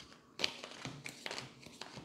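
A deck of tarot cards handled by hand: a sharper tap about half a second in, then a run of light taps and rustles as the cards are picked through.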